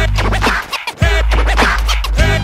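Vinyl record being scratched by hand on a DJ turntable over a heavy beat, in quick back-and-forth sweeps. The music drops out briefly just before a second in, then comes back.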